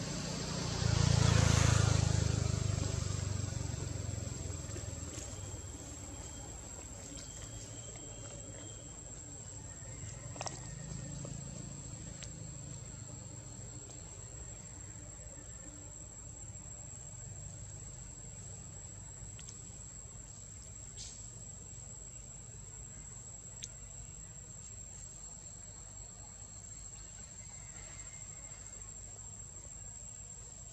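Outdoor ambience: a steady high-pitched insect drone, with a low rumble that swells in the first couple of seconds and fades away, and a few faint clicks.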